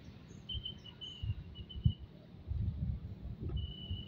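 A thin, high, steady insect trill that starts and stops a few times, over low rumbling bumps of wind and handling on a hand-held phone microphone.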